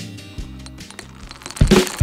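Soft background music with low sustained notes, then a sudden loud hit about one and a half seconds in.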